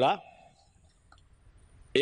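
A man's Sinhala speech breaks off, leaving a pause of near silence with a faint click about a second in.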